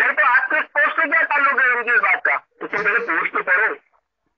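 Speech only: a person talking in two stretches with a short pause about two and a half seconds in, the voice cut off above the middle range as in a phone or voice-chat recording.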